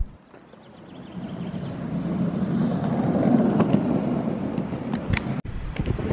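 Skateboard wheels rolling on asphalt: a steady rumble that swells over the first couple of seconds and then holds, with a few faint clicks.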